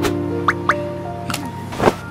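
Cartoon background music with held notes. Over it come two quick rising blips about half a second in and a short wet slurp near the end as the cartoon larva's tongue licks the teddy bear.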